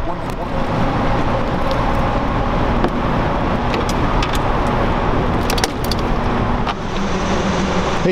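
A boat's motor running steadily with a low hum.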